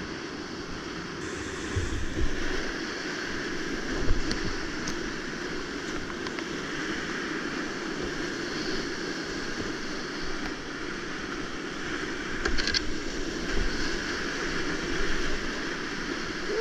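Whitewater rapids rushing steadily around a kayak at a high river flow, with brief louder splashes now and then as the boat punches through waves.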